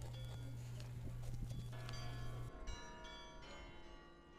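Bell-like ringing tones come in shortly before halfway and carry on. Under them, a steady low hum with scattered knocks cuts off suddenly about two and a half seconds in.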